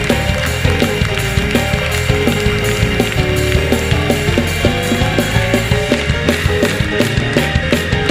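Fast gospel praise-break music from a live church band: drums keep a quick, steady beat under sustained chords and a heavy bass line.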